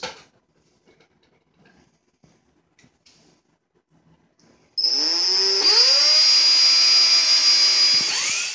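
Cordless drill spinning a CD on a homemade polishing jig while a wet towel with polishing compound is pressed against the disc. The drill starts almost five seconds in with a rising motor whine, steps up in speed a second later, then runs steadily. Before that there are only a few faint handling clicks.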